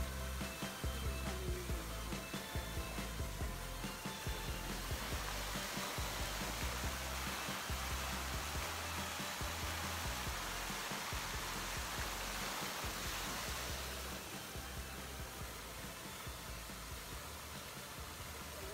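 Background music with a repeating bass line, over the steady rushing and splashing of a water fountain's jets, the water loudest in the middle.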